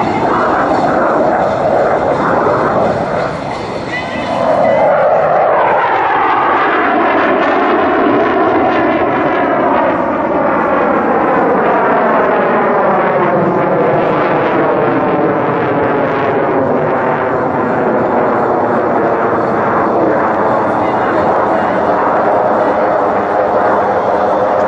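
CF-188 Hornet (CF-18) fighter's twin jet engines running in afterburner during a fly-past: a loud, continuous roar. It dips briefly a few seconds in, then swells with a sweeping, slowly falling pitch as the jet passes.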